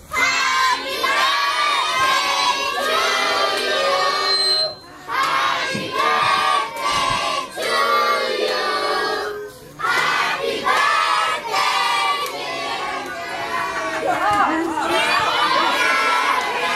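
A group of children's voices singing together loudly, in phrases with short breaks about five and ten seconds in.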